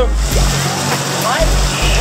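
Steady rush and splash of water running down a children's water slide into a shallow splash pool, with faint children's voices in the background.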